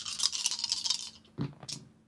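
Hands rubbed briskly together, a dry scratchy rubbing for about a second, followed by a brief vocal sound.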